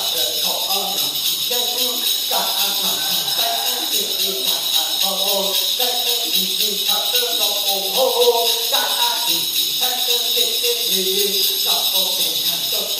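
Hmong shaman chanting in short recurring phrases over the continuous jingling of a shaken metal rattle and bells.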